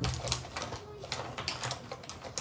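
Hands rummaging in a fabric pouch: a quick, irregular run of light clicks and rustles from small hard items and cloth being handled.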